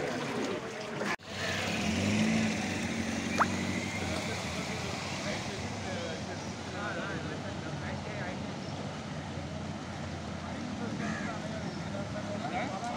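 Scattered voices of a group of people over a steady low rumble of background noise, with a brief dropout in the sound about a second in.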